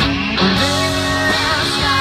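A live rock band playing a passage between sung lines: electric guitars holding chords over bass guitar and drums.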